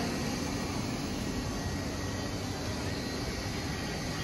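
Steady outdoor street noise: an even hiss with a low traffic rumble underneath.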